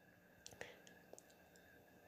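Near silence: faint room tone with a few tiny clicks.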